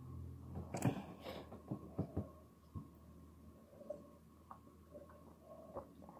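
Textured glass tumblers being handled and knocked together, a few sharp clicks in the first three seconds, the loudest about a second in, then only faint handling ticks.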